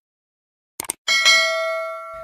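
A single bell-like chime struck about a second in, ringing with a clear tone and slowly fading, just after a couple of short clicks.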